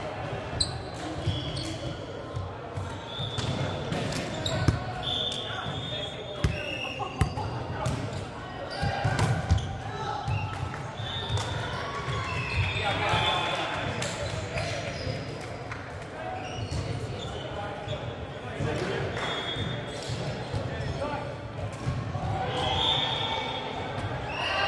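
A volleyball thudding on a hardwood sports-hall floor several times, with sneakers squeaking on the court and players' voices echoing in the large hall.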